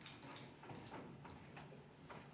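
Near silence in a large room, broken by faint, irregular small ticks and knocks.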